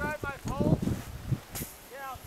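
People talking briefly in short, indistinct bits of speech, over a rough low rumble from the outdoor microphone.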